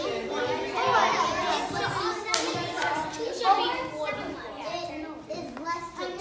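Many young children talking at once in pairs, overlapping chatter of children's voices filling a classroom.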